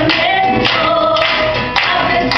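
A woman singing a melody into a microphone, accompanied by a classical nylon-string acoustic guitar, with sharp ticks keeping a beat about twice a second.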